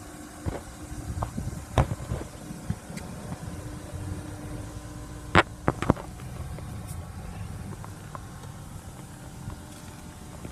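A low steady rumble with scattered sharp clicks and knocks from the camera being handled around the car's interior, the loudest a quick group of knocks about five and a half seconds in.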